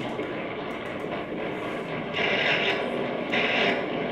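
Free-improvised music from a trio of effects-processed electric guitar, Nord keyboard and drums, here a dense, noisy drone with no clear beat. Two brighter, hissing swells come in the second half.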